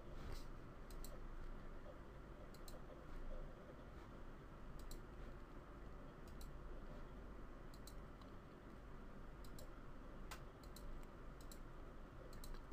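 Faint computer mouse clicks, each a quick pair of ticks, every second or two, over a low steady hum.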